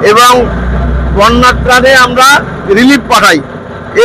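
A man talking in Bengali close to a handheld microphone. A steady low rumble sits under his voice for about two seconds in the first half.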